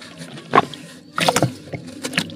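Red dirt crumbled by hand over a tub of water, crumbs and small chunks plopping and splashing into the water in irregular bursts. One splash comes about half a second in and a tight cluster of them follows past the middle.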